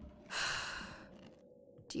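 A person's long sigh, one breathy exhale lasting well under a second that fades away, over a faint steady low tone.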